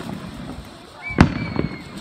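Ground fountain firework spraying sparks with a steady hissing crackle. A single sharp bang about a second in, followed by a thin whistling tone.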